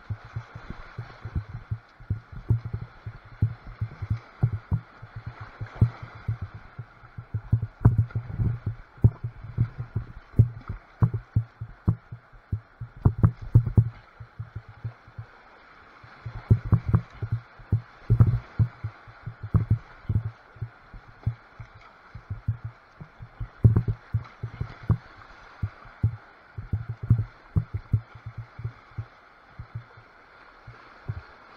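River water slapping and buffeting a kayak's bow and the bow-mounted camera's waterproof housing while running Class III rapids. The result is a dense, irregular run of muffled low thumps over a faint rush of whitewater.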